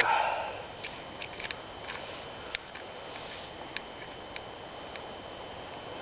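Hands tying a snare line onto a stick: a few small, scattered clicks and handling rustles over a steady hiss.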